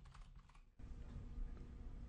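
Faint typing on a computer keyboard as a password is keyed in, a few keystrokes in the first second. A low steady hum of background noise follows.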